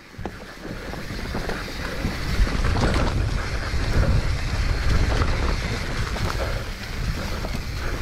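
Wind rushing over the camera microphone with the rumble and rattle of a mountain bike riding fast down a dirt forest trail, with scattered knocks from bumps. The noise builds over the first second or two and then stays steady.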